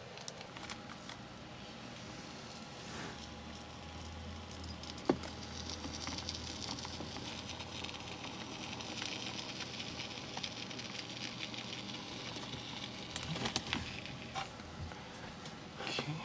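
Can of expanding spray foam being dispensed through its straw nozzle: a steady hiss with a sputtering crackle, starting about five seconds in and lasting most of the rest, after a single sharp click.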